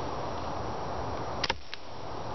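Steady outdoor background hiss, with a sharp click about one and a half seconds in and a fainter second click shortly after.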